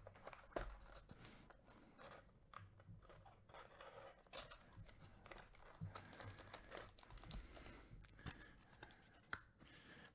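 Faint handling of a cardboard trading-card hobby box as gloved hands open it: light rustles, scrapes and small taps, with a slightly sharper click about half a second in.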